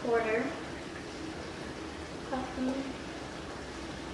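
Two short untranscribed sounds from a girl's voice, one right at the start and one about two and a half seconds in, over a steady faint hiss.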